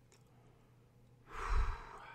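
A person sighs, one heavy breath out into a close microphone, about a second and a half in, after a brief quiet pause.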